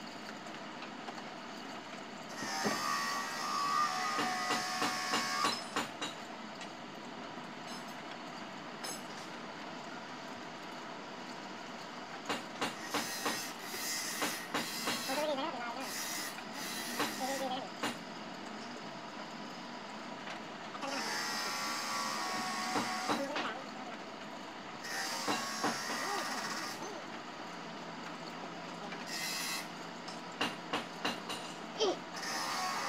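Clicks and taps of a screwdriver working screws on the plastic back cover of a flat-panel LED TV. Three louder stretches of noise lasting a few seconds each break in over the clicking.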